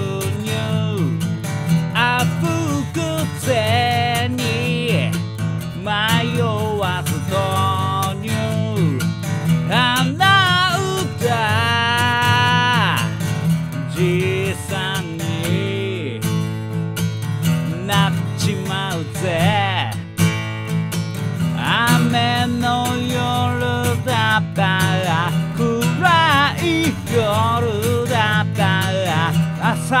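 Epiphone FT-110 Frontier acoustic guitar strummed steadily, with a man singing along.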